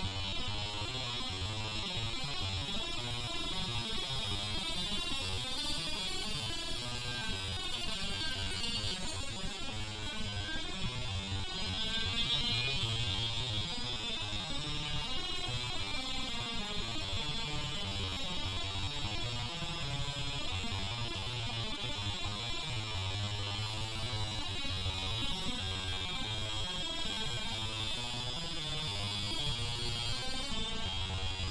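An opened Quantum 840AT IDE hard drive spins with a felt-tip marker pressed against its platter, the recording slowed to quarter speed. It makes a steady low hum under a high, wavering whine that sweeps up and down for a few seconds partway through.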